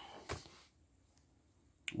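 Faint paper handling, sheets and a manila envelope being shifted, with one sharp click about a third of a second in and another short click near the end.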